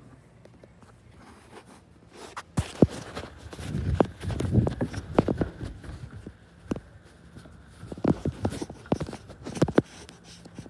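Footsteps and phone handling noise: irregular knocks, thumps and clicks, starting about three seconds in, busiest in the middle and again near the end.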